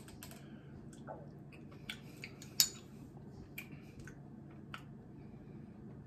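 Scattered small clicks and taps as a glass hot-sauce bottle and a small wooden tasting spoon are handled and set down on a table. The sharpest is a bright, briefly ringing clink about two and a half seconds in.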